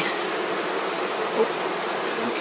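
Steady hum of a calm colony of Buckfast honeybees buzzing around an open hive.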